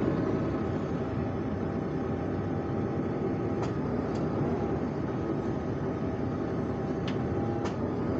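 Tractor engine running steadily while its hydraulics open the trailer's front door, with a few light clicks about halfway through and near the end.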